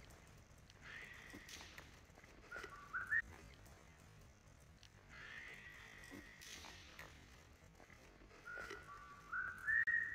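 High whistling notes heard twice. Each time a long held note is followed by a short run of stepped notes rising in pitch.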